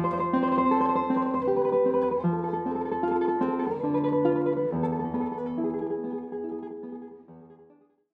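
Guitar music: plucked notes in several voices, fading out over the last two seconds.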